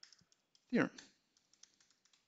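Typing on a computer keyboard: scattered key clicks at first, then a quick run of them in the second half.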